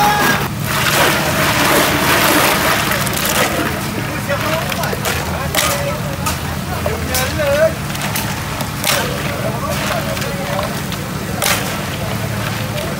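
Ice cubes clattering and drink sloshing as a large plastic tub of iced drink is stirred and scooped with a long plastic ladle, with scattered sharp clicks of ice. Chatter of people in a crowd runs underneath.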